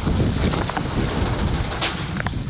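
Wind buffeting the microphone of a handheld camera outdoors, an uneven low rumbling rush, with one short click near the end.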